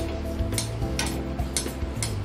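Hot oil sizzling as an appam deep-fries in a kadai, with oil ladled over it from a perforated spoon and a few short clicks, over soft background music.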